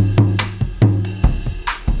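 Drum bus playback with a glue compressor (Acustica Audio TAN) switched in: kick and snare hits with cymbals over a held low bass note. The compressor brings up the sound in between the hits and lifts the transients of the hits.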